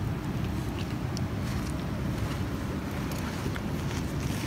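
Wind buffeting the microphone: a steady low rumble with a few faint clicks.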